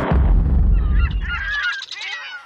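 Title-card sound effect: a deep rumbling whoosh, joined from about a third of the way in by many overlapping bird calls that waver up and down in pitch.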